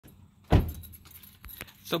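A car door thumps shut about half a second in, followed by a light metallic jingle and two small clicks near the end.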